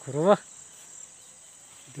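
Steady high-pitched chirring of field insects, unbroken throughout, with a short spoken word right at the start.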